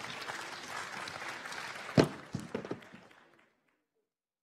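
An audience applauding, fading out to silence about three and a half seconds in. A sharp knock about two seconds in is the loudest sound, followed by a few softer knocks.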